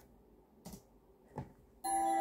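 Two short clicks on a laptop, about 0.7 s apart, in a near-quiet room, then music with ringing, bell-like notes starts just before the end as the video begins playing.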